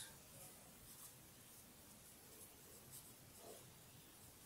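Faint scratching of a black marker pen writing a word on paper on a clipboard.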